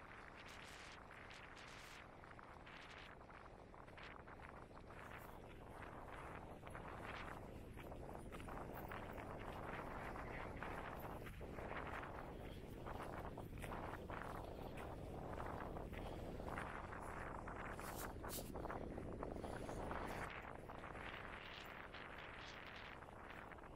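Footsteps of a walker on a dry, stony dirt trail over a rushing, uneven noise that grows louder about five seconds in and eases near the end.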